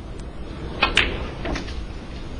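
A snooker cue tip strikes the cue ball about a second in, with a second sharp click right after it. A softer knock follows about half a second later.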